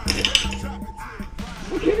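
Hip-hop music: a rapped vocal over a beat.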